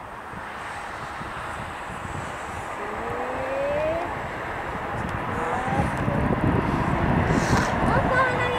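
Bombardier Global Express (BD-700-1A10) business jet on final approach, its twin Rolls-Royce BR710 turbofans growing steadily louder as it nears the runway.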